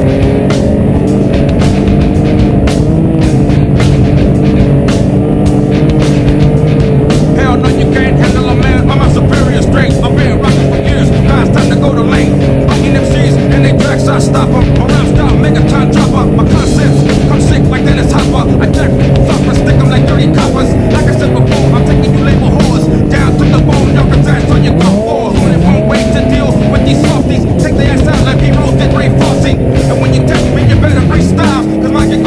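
Yamaha Nytro snowmobile's four-stroke engine running at steady revs as the sled rides through deep powder. The revs drop briefly and pick up again about five seconds before the end.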